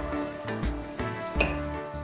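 Chopped onion sizzling steadily as it fries in oil in a nonstick pan, with background music underneath.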